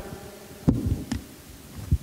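Handheld microphone handling noise: three short, low thumps as the mic is moved about in the hand, over faint room tone.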